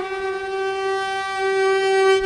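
Shofar, a long curled horn, sounding one long blast held steady on a single pitch.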